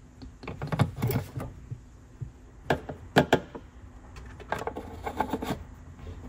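Scattered knocks, clicks and rubs of hands handling a plastic oil bottle and the engine's rocker-cover oil filler cap while topping up the oil, in a few short clusters.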